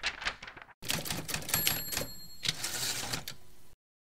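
Typewriter keys clattering in quick irregular strokes, with a bell ringing for about a second in the middle. It cuts off shortly before the end.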